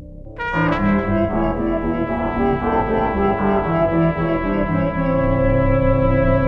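Trumpet improvising together with an interactive computer music system that responds to it, a brass-like ensemble sound. About half a second in, a loud full texture of many held notes enters, shifting from note to note, then settles into a sustained chord near the end.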